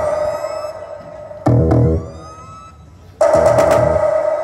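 Electronic dance remix played through a large stacked mobile sound system, made of short bursts of a held, siren-like synth tone with swooping glides. The bursts hit at the start, about a second and a half in and again near the end, fading away between them.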